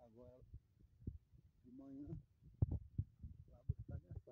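Irregular low thumps of footsteps and of the handheld phone being jostled while walking a dirt trail, with a few short, indistinct bits of voice.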